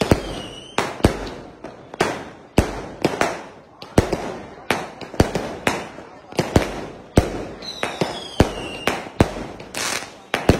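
Fireworks going off in quick succession: shells launch and burst with sharp bangs about twice a second. A falling whistle sounds right at the start and again about eight seconds in.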